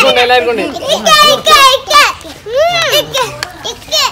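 Children's voices: high-pitched talking and exclamations, several voices overlapping.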